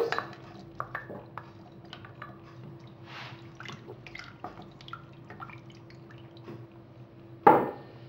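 Potato pieces being dropped into a pot of vegetable broth: scattered small plops, splashes and clinks, over a faint steady hum. A short voice sound comes near the end.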